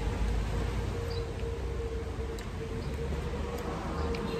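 Outdoor background: a steady low rumble with a steady mid-pitched hum, and a few faint, short, high chirps.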